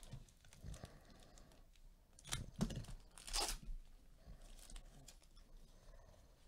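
Foil wrapper of a trading card pack being torn open: a short rip about two seconds in and a longer one about three and a half seconds in, with faint crinkling of the foil around them.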